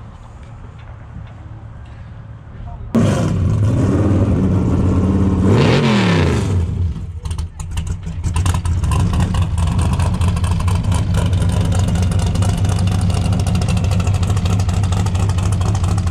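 Race-built Jeep off-roader's engine running loud: it comes in suddenly about three seconds in, revs up and drops back, then settles into a loud, steady idle.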